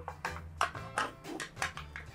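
Foil lid being peeled off a small plastic tub: a string of short, sharp crackles. Background music with a steady low bass line plays throughout.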